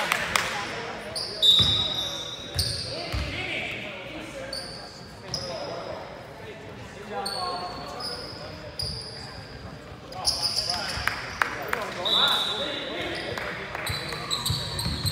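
Basketball game on a hardwood gym floor: sneakers squeak again and again in short high chirps, a ball bounces a few times in the first seconds, and players call out to each other.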